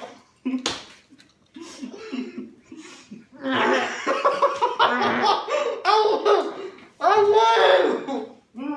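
Teenage boys laughing hard, with voices muffled and mumbling through mouths stuffed with marshmallows. The laughter swells loud about three seconds in and comes in repeated bursts, after two sharp clicks near the start.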